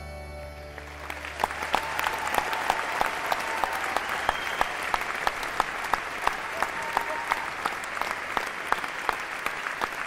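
The song's final sustained chord dies away in the first second, then a concert audience breaks into applause with some cheering, dense and steady to the end.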